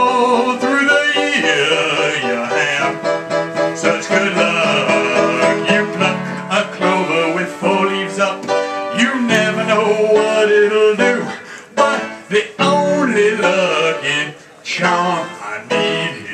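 Upright piano played as a song accompaniment, dense chords and melody with a steady rhythm, dropping out briefly a couple of times near the end.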